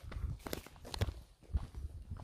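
Footsteps of someone walking on a cobblestone street, several steps at about two a second, each a short scuff with a dull low thud.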